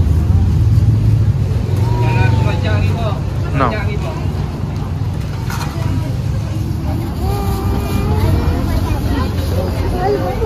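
Street ambience of scattered voices and chatter over a steady low rumble of vehicle engines and traffic. The rumble is strongest in the first few seconds.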